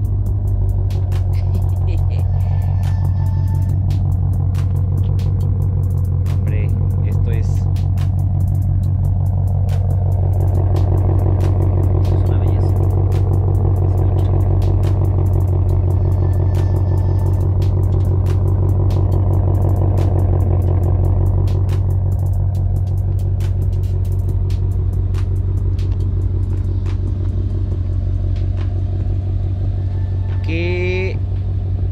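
Ford Shelby GT500's supercharged 5.2-litre V8 idling at a steady, unchanging speed, a deep low hum with no revs.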